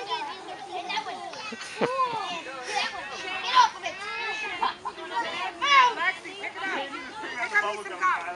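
Several young children's voices at once, chattering and calling out over one another as they scramble for piñata candy.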